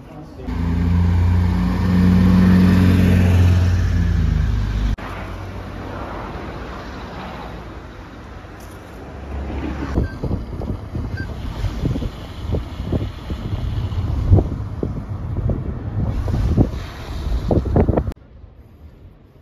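A car on the road: a steady engine and road hum for the first few seconds, which cuts off abruptly. After that comes lower road noise, then irregular gusts of wind buffeting the microphone.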